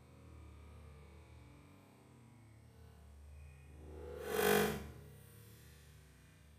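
A golf iron swung through the air and grass: one rushing whoosh that swells and fades over about a second, a little past the middle.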